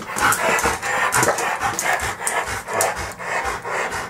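A dog panting fast and excitedly, with its paws knocking and claws clicking on a hard tiled floor as it jumps about, eager to be fed.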